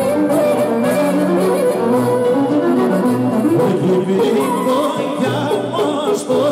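Live Greek folk dance music from clarinet and violin, an ornamented melody over a steady bass beat.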